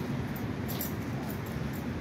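Outdoor background noise: a steady low rumble with a few faint light clicks a little under a second in.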